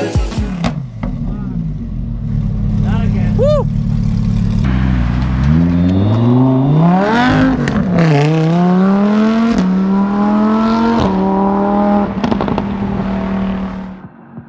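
Lamborghini Huracán's V10 engine accelerating hard. Its pitch climbs, drops sharply at an upshift about eight seconds in, then climbs again through the next gear before levelling off.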